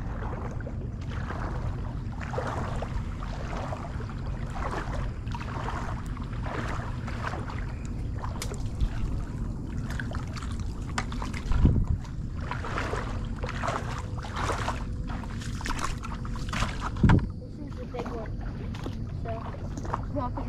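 Legs wading through shallow water, with repeated sloshing splashes every second or so over a steady low wind rumble on the microphone. Two brief low thumps stand out, about twelve and seventeen seconds in.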